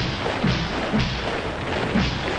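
Boots of a large column of soldiers striking the ground in unison as they march in parade step, a regular low thud about every half second to second, over background music.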